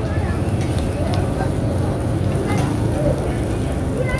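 A steady low rumble under a large wok of frying oyster omelette, with a few faint clicks and scrapes of a metal spatula turning the pieces.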